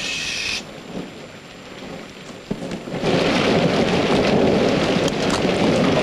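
Film soundtrack of a thunderstorm: steady rain, with a loud roll of thunder setting in about three seconds in and carrying on. A brief hiss is heard at the very start.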